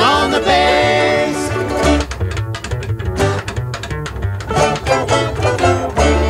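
Bluegrass string band playing the closing instrumental bars of a song: held bowed notes for about the first two seconds, then quick plucked picking over a steady bass.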